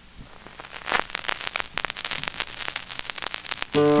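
Surface crackle and pops from a vinyl 45 rpm single's groove as the stylus tracks it before the song, many sharp clicks over a low hiss. Near the end the song starts suddenly with singing.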